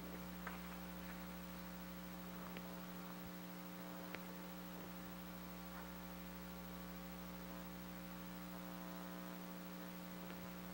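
Steady electrical mains hum at low level, with a few faint clicks.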